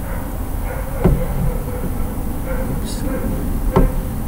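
Two sharp knocks, about a second in and again near the end, over a steady background hum: handling noise from an end-blown flute held and moved close to the microphone.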